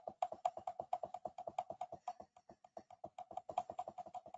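A rapid, even train of short pulses of one mid-pitched tone, about ten a second, each pulse with a clicky edge.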